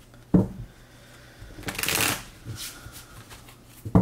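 A tarot deck shuffled by hand: the cards rustle as they slide through each other for about half a second in the middle, with a shorter rustle after it. A sharp knock from the deck comes just after the start and another near the end.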